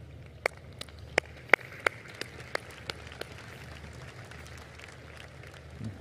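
Footsteps on a stage floor picked up by the stage microphones: a run of sharp clicks, about three a second, that stops about three seconds in, over faint open-air crowd ambience.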